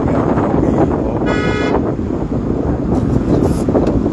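A vehicle horn honks once, about half a second long, a little over a second in, above a steady loud rumble of traffic and wind on the microphone.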